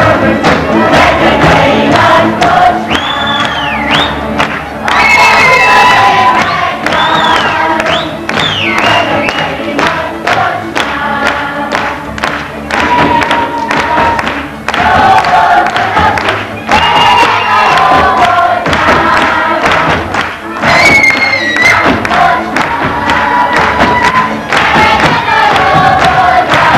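Lively Hungarian folk music played live on fiddles and double bass, with a crowd of dancers' voices singing along. High rising-and-falling shouts come over the music a few times, near the start, in the middle and near the end.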